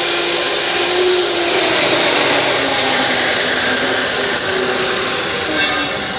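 Motor-driven hydraulic pump running steadily to power a hydraulic lug crimper, a loud even motor noise with a faint high whine. There is a brief louder burst about four and a half seconds in.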